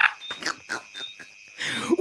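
A faint, steady high-pitched tone with two brief, higher beeps and a few small clicks, after laughter trails off; a louder breathy sound comes near the end.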